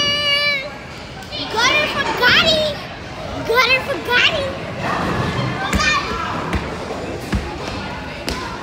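Children's high-pitched voices calling out and squealing in a bowling alley, with a few low thuds in the second half.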